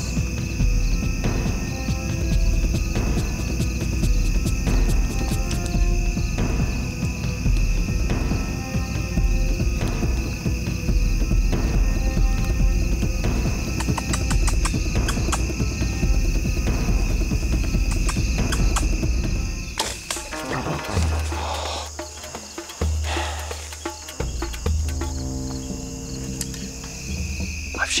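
Background music with a heavy low beat, changing to a different section of slow bass notes about twenty seconds in. A steady high-pitched insect chorus sounds under it throughout.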